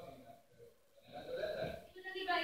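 A stage actor's voice heard from the audience seats, distant and faint, with a short spoken phrase in the second half.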